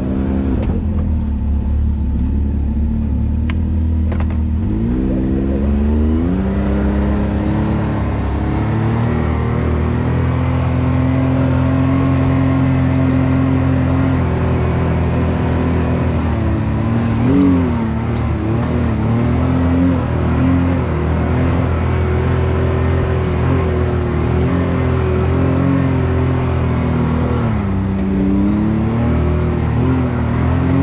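Can-Am Maverick X3's three-cylinder turbocharged engine running continuously as the side-by-side crawls along a rough dirt trail. Its pitch rises and falls with repeated throttle changes, climbing in the first few seconds and dipping briefly a few times later on.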